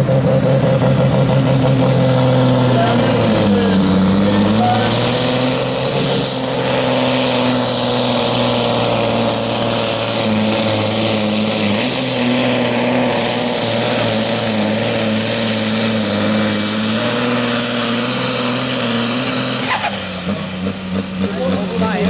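Ford 9000 pulling tractor's diesel engine at full throttle, hauling a weight sled in a tractor pull. The revs sag briefly about three to four seconds in as the load builds, then it runs hard and steady until the throttle comes off near the end and the engine note drops.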